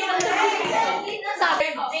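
Several young people talking over one another, with a few brief sharp hand sounds.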